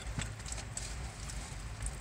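Freight train of empty autorack cars rolling past: a steady low rumble with occasional clicks of steel wheels over rail joints.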